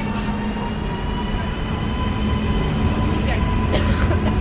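A WKD electric commuter train at the platform: a low rumble under a thin electric motor whine that rises slowly in pitch. There is a brief sharp click near the end.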